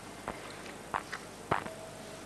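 Four faint, short knocks spread over two seconds above a low background hiss.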